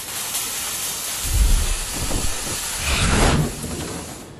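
Steady hissing noise with two deep rumbling booms, one just over a second in and one about three seconds in.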